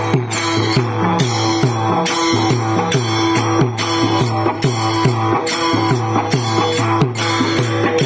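Pakhawaj (Warkari two-headed barrel drum) played in a fast, steady rhythm, with deep booming strokes and ringing higher strokes. Small brass hand cymbals (taal) jangle along in time.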